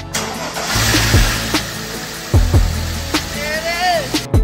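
Background music with a steady kick-drum beat over a Mercedes-Benz M104 inline-six being started, with its noise strongest in the first couple of seconds.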